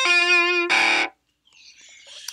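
Sampled electric guitar from Logic's EXS24 'Sunburst Electric' instrument playing the last notes of a melodic phrase, the pitch wobbling slightly up and down with modulation-driven vibrato. The notes stop about a second in.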